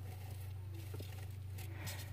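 Faint rustling and light taps of artificial plants being handled in a terrarium, over a steady low electrical hum.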